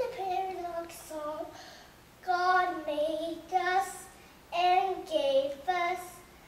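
A young boy singing a song on his own in short phrases, with brief pauses between them.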